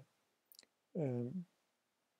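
A single faint short click about half a second in, then a man's voice sounding briefly for about half a second.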